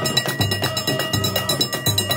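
Moroccan traditional band playing: clattering metal percussion in a fast, even beat, with deep drum beats under it about every three-quarters of a second and a sustained melody line over the top.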